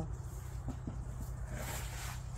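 A person sniffing: one long breath in through the nose, starting about one and a half seconds in, over a steady low hum.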